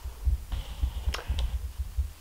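Handling noise from a camera being held and moved: low, irregular thumps and rumbling, with two soft clicks just past the middle.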